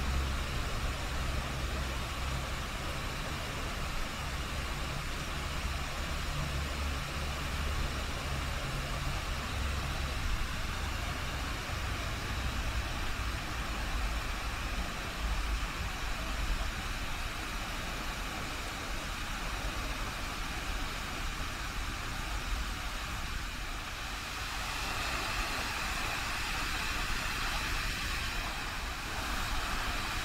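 Steady outdoor background noise: a low rumble under an even hiss, with a higher, steady note coming in about two-thirds of the way through.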